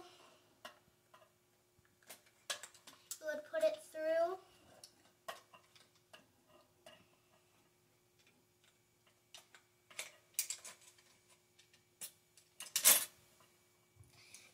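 Scattered light clicks and knocks of a pin and 3D-printed plastic parts being handled and fitted together on a jigging-machine frame, with one louder, sharp clack near the end.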